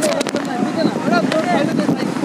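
Several voices talking over one another, with a few sharp clicks as metal clips on a parasailing harness are handled.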